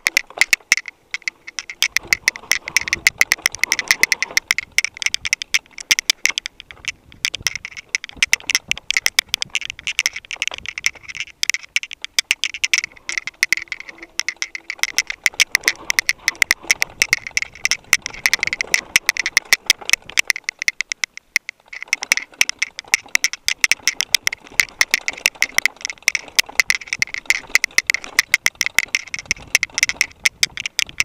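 Mountain bike rattling and clattering over a rough, rocky dirt trail: a dense run of sharp, irregular clicks, easing off briefly about twenty seconds in.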